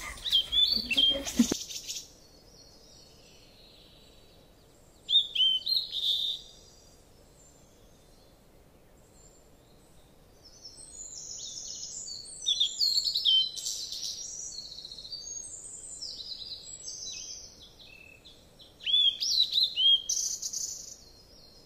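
Small birds chirping and calling in short high chirps, in a brief burst about five seconds in and again almost without pause through the second half.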